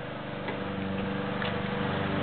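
A steady mechanical hum, slowly growing louder, with a couple of faint ticks.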